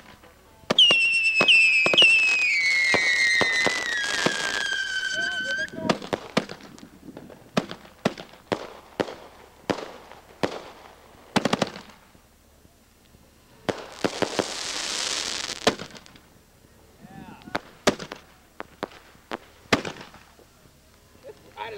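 Consumer fireworks. First several whistles sound together for about five seconds, all sliding steadily down in pitch, and stop at once. Then comes an irregular string of sharp bangs and cracks from aerial shells, with a hiss lasting about two seconds partway through.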